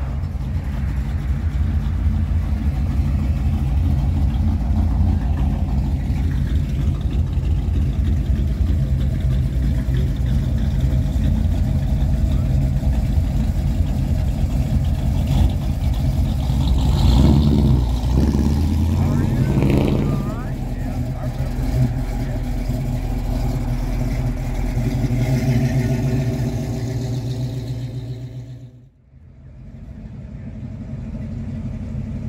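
A car engine idling close by, a steady low hum with an even pitch. It gets busier and louder for a few seconds past the middle, with voices, and cuts out briefly near the end.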